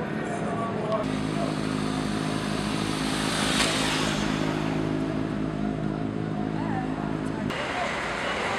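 A motor vehicle engine running steadily from about a second in, under background voices. A passing vehicle swells up and fades away around the middle. The engine sound cuts off suddenly near the end.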